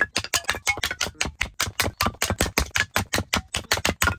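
A hatchet chopping into firewood on a wooden chopping block: a rapid, even run of sharp wooden strikes, about seven or eight a second.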